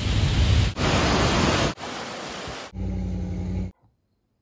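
Loud wind and surf noise on a beach, the even rush of wind on the microphone and waves, cut off abruptly into further short noisy snippets about once a second. A steady low hum follows, and the sound stops dead near the end.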